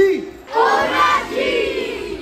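A large group of children shouting together: a single call at the start, then a loud joint yell that starts about half a second in and holds for about a second and a half.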